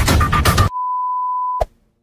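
Electronic beep sound effect: a quick run of short beeps over the tail of the intro music, then one long steady beep lasting about a second that cuts off with a click, leaving silence.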